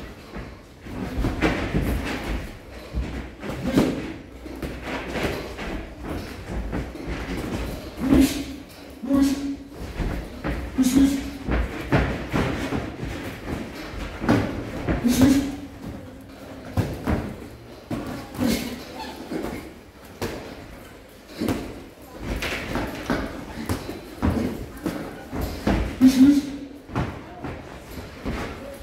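Boxing sparring in a ring: irregular thuds of gloved punches landing and feet on the ring canvas, with short grunts or breaths from the boxers between blows.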